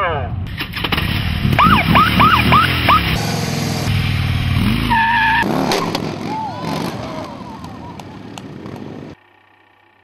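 Edited soundtrack of voices and vehicle sounds over music, cutting off suddenly near the end.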